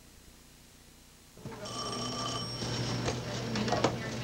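After a second and a half of near silence, a telephone rings once for about a second, over a low steady hum and the background noise of a busy office.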